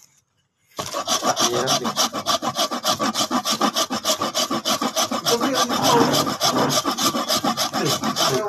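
A hard lump of pot-baked salt grated by hand to powder, rasping in rapid, even back-and-forth strokes several times a second, starting about a second in.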